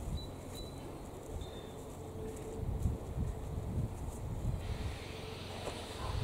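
Wind buffeting the microphone in uneven gusts, a low rumble.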